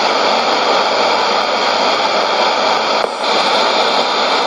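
Steady loud hiss of static from a Sony ICF-2001D shortwave receiver's speaker, tuned to a frequency with no station on it, with a brief dip about three seconds in.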